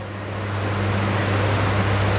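Steady hiss that slowly grows louder, over a low steady hum.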